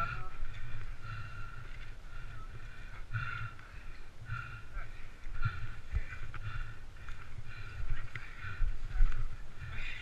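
Indistinct, muffled voices in short bursts, with the low rumble and occasional knocks of a helmet-mounted camera moving.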